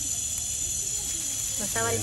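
A steady high hiss, with a man's voice starting near the end.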